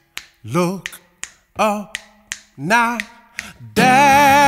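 Finger snaps, about one a second, keeping time under short sung phrases while the guitar drops out. Acoustic guitar strumming and full singing come back in near the end.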